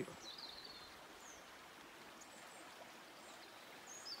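Near silence: faint, even outdoor hiss, with a few faint, short, high bird chirps now and then.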